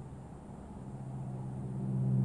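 A steady low hum, two even tones, that fades in about a second in and grows louder toward the end.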